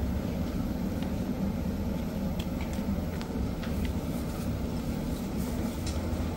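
Steady low rumble of a large hall's background noise, with a few faint ticks.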